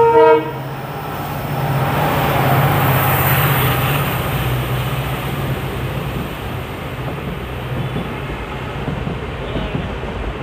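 A WDP4D diesel locomotive sounds a short, loud horn blast right at the start. Its engine's low hum and the rail noise then swell as the locomotive runs past, about two to four seconds in. After that comes the steady rumble of LHB passenger coaches rolling by.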